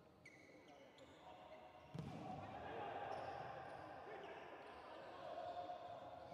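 Volleyball rally on an indoor court: short high squeaks of shoes on the floor, then a hard ball strike about two seconds in, followed by shouting voices.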